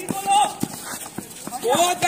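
A basketball bouncing a few times on an outdoor concrete court, with players' shouting voices just before and after.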